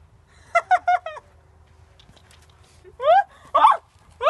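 A teenage boy laughing: a quick run of short laughs about half a second in, then louder laughing with a rising, whooping pitch near the end.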